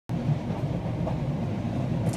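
Steady low rumble of a moving passenger train, heard from inside the carriage.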